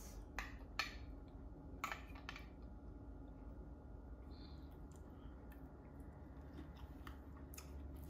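Faint crunching as a person chews crispy deep-fried tilapia with a fried coating: a few sharp crunches in the first couple of seconds and another near the end.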